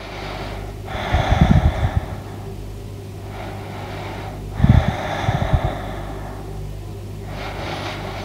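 A woman's slow, deep breaths, about three, taken while holding an abdominal crunch, heard close on a clip-on microphone. Each stronger breath comes with low puffs of air on the microphone.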